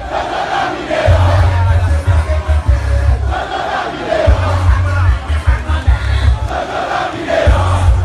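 A huge crowd of demonstrators shouting and chanting, with loud bass-heavy music pulsing underneath in stretches that drop out briefly every couple of seconds.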